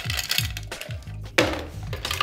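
Ice cubes clinking into a metal tin as they are measured out: a run of sharp clinks, the loudest about one and a half seconds in, over background music.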